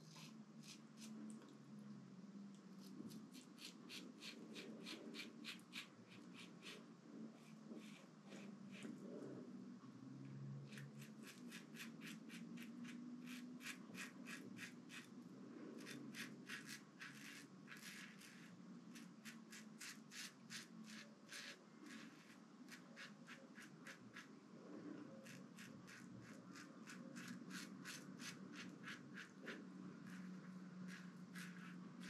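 Stainless steel double-edge safety razor (Razorock Lupo fitted with a Gillette 7 o'clock Super Platinum blade) cutting stubble through shaving lather: faint, quick scratchy strokes in runs of about three to four a second, broken by short pauses.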